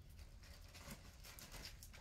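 Faint rustling and light clicks of items being handled and moved about.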